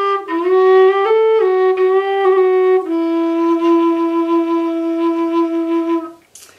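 Low whistle playing a descending phrase of several notes, with quick trill and slide ornaments flicking between them. About three seconds in it settles on a long held low note with a light vibrato.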